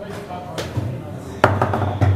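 Foosball knocks from a table football game in play: a light knock about half a second in, then a sharp, loud crack of the ball being struck a little before the end.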